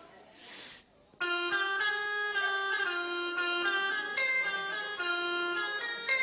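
A short melody of held notes on a reedy, organ-like keyboard voice, starting suddenly about a second in and stepping up and down between notes: the tune for the flute being played on stage.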